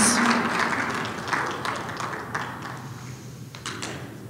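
Audience applause dying away, fading out steadily, with a few scattered last claps near the end.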